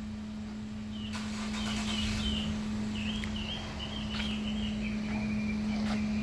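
A bird singing a long, wavering, warbling high-pitched song that starts about a second in and runs until near the end, over a steady low hum.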